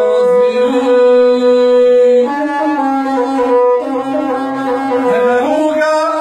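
Gusle, the single-string bowed folk fiddle, playing a melody in long held notes that change pitch a few times.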